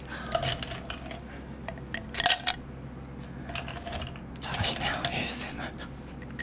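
Ice cubes clinking and clattering against a drinking glass as they are scooped into it from an ice bowl, in several separate bursts and one longer rattle near the end.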